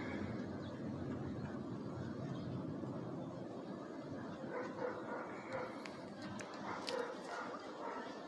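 A dog barking a few short times from about halfway in, over a steady low background noise.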